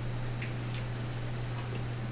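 Steady low electrical hum, with a few faint light clicks about half a second in and again about a second and a half in.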